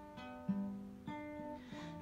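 Acoustic guitar strumming a few chords that ring out between sung lines.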